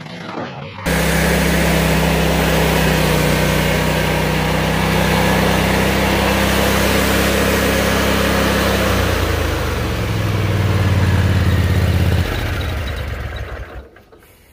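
Stand-on mower engine running steadily, then throttled down to a lower pitch about nine seconds in and shut off at about twelve seconds.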